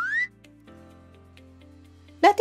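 A cartoon sound effect: a whistle-like tone gliding upward in pitch, cutting off about a quarter second in. Soft, steady background music follows.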